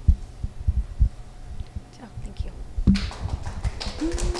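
Low, irregular thumps and rubbing from a handheld microphone being handled as it is passed from one speaker to the next.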